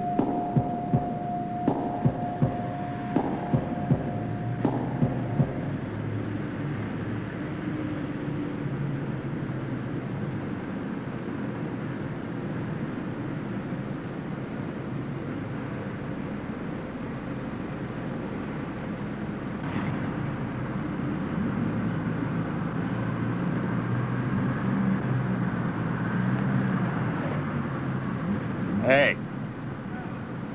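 City street ambience: traffic running with the hubbub of people's voices. For the first five seconds, a regular beat of sharp knocks, a little over one a second, plays over a held tone and then stops. Near the end comes a brief loud wavering sound.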